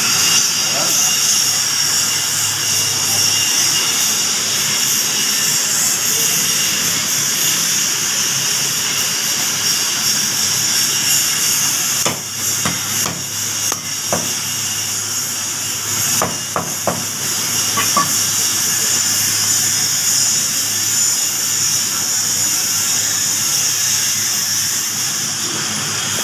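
Steady loud hiss with a low hum underneath, and a few light knocks about halfway through.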